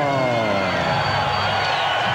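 A ring announcer's drawn-out call of the winning boxer's name: one long held voice sliding slowly down in pitch, over a cheering arena crowd.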